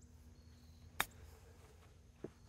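A golf club striking the ball in a short chip shot off the grass: one short, sharp click about a second in, against faint background.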